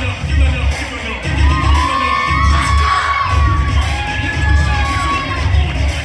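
Audience cheering and screaming, with high-pitched shouts through the middle, over loud hip hop music with a heavy bass beat.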